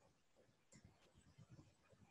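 Near silence: faint room tone with a few very faint, short ticks.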